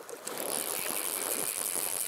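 River water running steadily as an even rush of flowing current.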